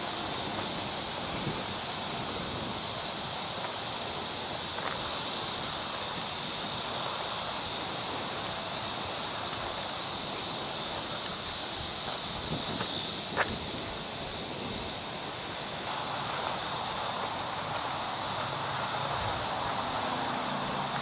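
Steady high-pitched chorus of insects in grassland, with a single brief click a little past halfway.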